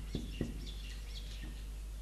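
Marker pen on a whiteboard: a couple of light taps, then faint, short, squeaky strokes, over a steady low hum.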